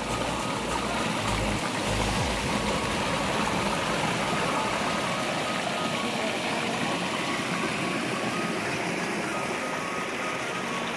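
Shallow stream water rushing steadily through a narrow rocky channel over stones and banana stems.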